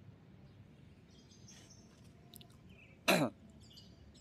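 A person gives one short cough about three seconds in, over faint bird chirping.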